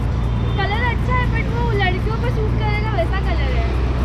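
Steady low rumble of passing road traffic, with a person talking over it from about half a second in.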